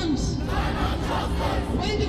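A crowd of protesters shouting together, many voices at once.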